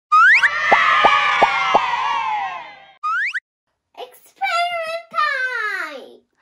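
Cartoon intro sound effects. A quick rising whistle-like glide leads into a held chord with four quick falling plinks, which fades out, then a second short rising glide. A young child's voice starts speaking about four seconds in.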